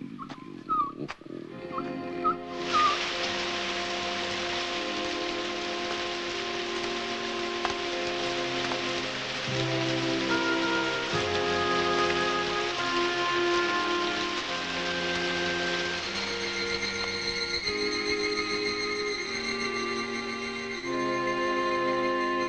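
Heavy rain sound effect that starts suddenly about two and a half seconds in and then runs on steadily, under slow sad film music of long held chords. A few short bird chirps come before the rain.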